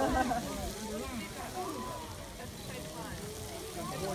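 Lady Knox Geyser erupting: the steady rushing roar of its water-and-steam column, with the overlapping chatter of the watching crowd on top of it.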